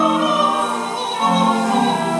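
A choir recording played through a compact stereo system's speakers: several voices holding sustained chords with vibrato, the lower parts moving to a new chord a little over a second in.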